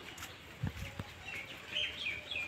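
Small birds chirping, a run of short rising and falling chirps in the second half. Two short low thumps come before them, just under halfway through.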